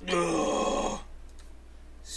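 A man's drawn-out groan of appreciation, about a second long and falling in pitch, followed by room quiet.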